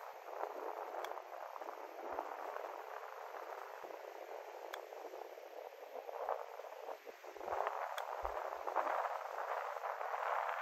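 Three light clicks of a golf club striking golf balls on chip shots, about three seconds apart, over a steady outdoor background hiss.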